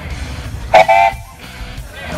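Case steam traction engine's steam whistle giving one short, loud blast, under half a second long, about three-quarters of a second in, over background guitar music.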